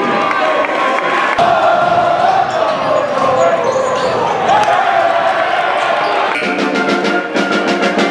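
Loud gymnasium crowd noise, many voices mixed with music. About six seconds in, a pep band takes over with brass and regular drum beats.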